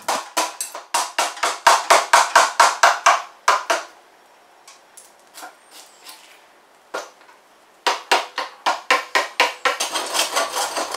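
Claw hammer tapping a wood chisel in quick succession, about five sharp blows a second, cleaning out notches in 2x4 lumber. The blows stop for a few seconds, with only a few faint knocks and one sharp one, then the rapid blows start again near the end.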